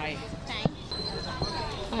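Soft background voices with two dull knocks, one just after the start and a smaller one in the middle, and a faint steady high-pitched whine through the second half.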